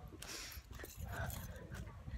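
A woman's short breathy laugh, then low rumble and footfalls on a handheld microphone while walking briskly.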